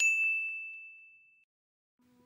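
A single bright ding, a bell-like chime sound effect, struck once and ringing out as it fades away over about a second and a half.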